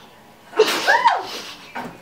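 A person bursting out laughing through a mouthful of water: a sudden explosive rush of breath about half a second in, then a short cry that rises and falls in pitch.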